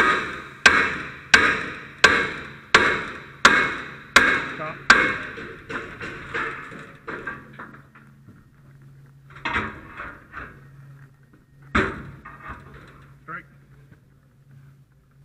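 A steel forcing bar being struck to drive it into the gap of a forcible-entry door prop: a quick run of about eight metal-on-metal strikes, roughly one every two-thirds of a second, each ringing briefly. After that come weaker blows and some clatter, with one more hard strike near the end.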